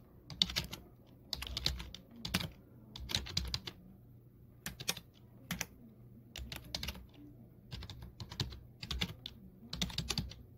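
Computer keyboard typing, heard as short irregular bursts of key clicks with brief pauses between them, as pinyin is typed into a Chinese input method.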